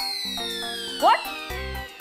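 Background music from a TV serial's score: a long tone slides steadily downward over short stepped notes, with a quick upward swoop about a second in.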